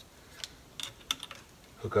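Several light clicks and taps of battery cable ends being handled and fitted at the terminals of a 12-volt battery, while the cable for a power inverter is being connected.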